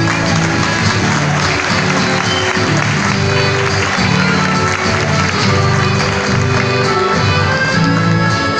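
Live instrumental passage of gaúcho folk music: acoustic guitars strumming with a piano accordion playing held chords and melody.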